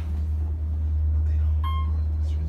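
Steady low hum inside a traction elevator cab, with one short electronic elevator beep near the end.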